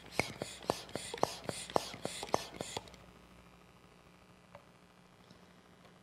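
Canned oxygen hissing through a nozzle into an empty plastic bottle in quick spurts, with sharp clicks from the plastic, stopping about three seconds in.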